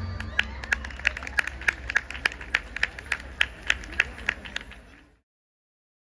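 Audience applauding, with one loud clapper close by keeping an even beat of about three claps a second over scattered crowd voices. The sound cuts off abruptly about five seconds in.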